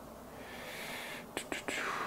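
A man's soft, breathy whisper under his breath, followed by two faint clicks about a second and a half in.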